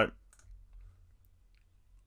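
A few faint computer mouse clicks, with quiet room tone between them.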